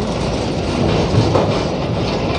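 A heavy container truck driving slowly past close by, a steady road and engine noise with no sharp events.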